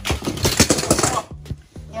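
A loud burst of rustling and clattering as objects in a crowded heap of household clutter are shoved and knocked about, lasting about a second before it stops.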